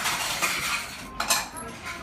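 Close-up crunching of crisp food being chewed, with light clinks of tableware. A dense crackle comes in the first half-second and another burst a little past the middle.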